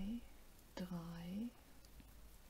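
A woman counting crochet stitches aloud in a soft voice, saying one number ("drei") in the middle, with faint handling sounds of the crochet hook and yarn between the words.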